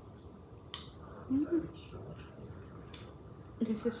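Chopsticks and ramen noodles handled over a small ceramic bowl: two light clicks, with a short hummed vocal sound about a second and a half in.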